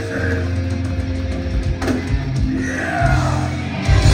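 Live punk rock band playing on stage, electric guitars and bass sounding through the club PA, with a loud hit near the end.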